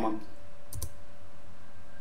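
A single key press on a computer keyboard, the Enter key, a short sharp click with a quick double stroke about three quarters of a second in, ending the text command. A steady electrical hum runs underneath.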